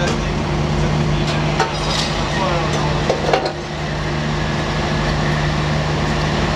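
Metal clanks, knocks and scraping as a POWERCHOCK wheel restraint's steel arm is pulled down from the dock wall and set against a trailer wheel. The loudest knocks come a little past three seconds in. A steady mechanical hum runs underneath.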